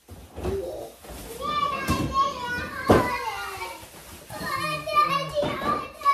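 Young children's high-pitched voices squealing and babbling in play, with two sharp knocks about two and three seconds in.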